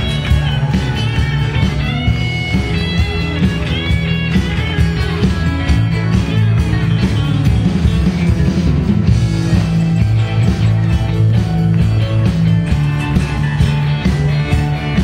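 Live band playing an instrumental passage: an electric guitar lead with bent notes over bass and drums, a steady dance beat throughout.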